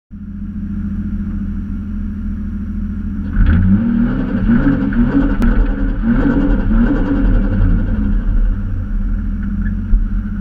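Toyota Chaser JZX100's straight-six engine running steadily, then revving hard about three seconds in as the car moves off, its pitch rising and falling with the throttle.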